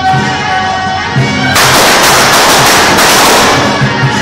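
Traditional procession music with a shrill reed horn playing held notes; about one and a half seconds in, a string of firecrackers goes off in a dense crackle for about two seconds, louder than the music, which carries on underneath.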